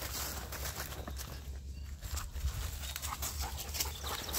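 A bird dog panting, over a low steady rumble.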